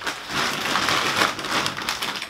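Plastic bag of frozen vegetables crinkling and rustling steadily as it is picked up and handled.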